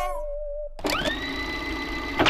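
The last notes of the track die away. About a second in, a machine-like whine starts, rises in pitch and then holds steady.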